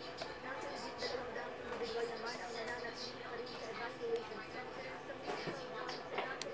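Low-level background speech.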